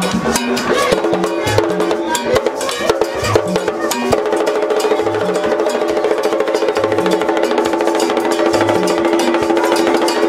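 Vodou ceremonial drumming: hand-played hide-headed drums beating a fast, dense rhythm. A steady held tone sounds underneath from about four seconds in.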